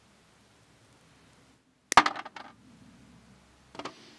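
A sharp metallic clatter about halfway through as metal drops into an aluminium baking pan and rattles briefly, then a smaller clatter near the end.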